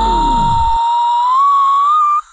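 Comedic sound effect: a single loud whistle-like tone held and slowly rising in pitch. Under it, the background music slides down in pitch and stops within the first second.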